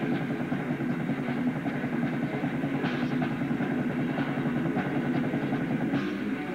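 Live rock band playing, electric guitars and drum kit together, recorded on a VHS camcorder.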